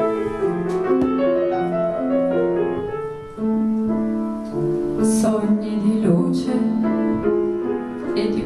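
Piano playing a slow passage of held notes, one note or chord after another, in an unhurried melodic line.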